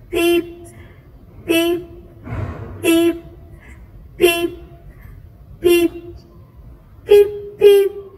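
A voice saying a short 'peep' over and over, seven times, about one every second and a half, with the last two close together near the end.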